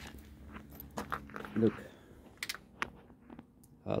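A few sharp, light clicks and knocks of handling noise, spaced irregularly between two short spoken words.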